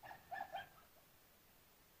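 A short animal call in three quick notes at the very start, then quiet.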